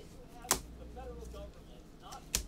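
Trading cards handled with gloved hands, with one sharp snap of a card about half a second in.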